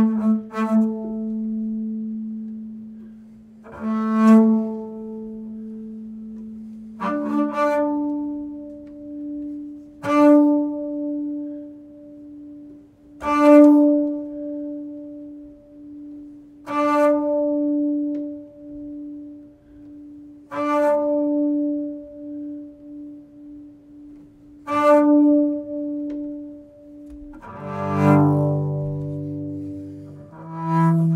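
Double bass played with the bow (arco): a long held low note, then a slightly higher note sustained and re-bowed with a strong attack every three to four seconds, each stroke ringing with bright overtones. Near the end it moves to several lower notes bowed together.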